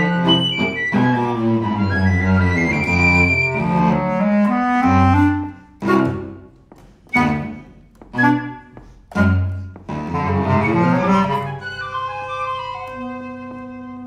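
Live contemporary chamber music for flute, bass clarinet and cello: a busy ensemble passage, then four short, loud, accented chords separated by brief silences, a busy burst again, and held notes near the end.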